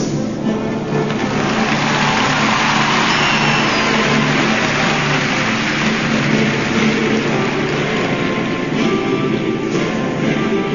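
Arena audience applauding and cheering over the free dance music. The crowd noise swells about a second in and dies back near the end, leaving the music alone.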